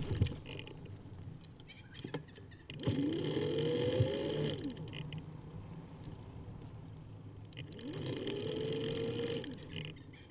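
A mechanical whine from the recumbent trike's drive comes twice, each time for about two seconds: it rises in pitch, levels off and fades. A few short knocks from bumps come near the start and about three to four seconds in.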